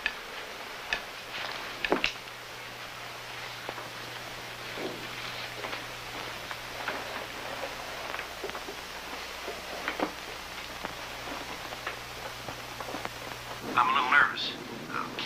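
Steady hiss and hum of an old film soundtrack, with faint scratchy ticks and two sharp clicks about one and two seconds in.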